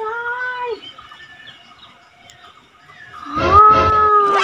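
Two long, steady-pitched wailing cries: a short one at the start and a louder, longer one near the end that sags in pitch as it dies away, with a few low thuds under it.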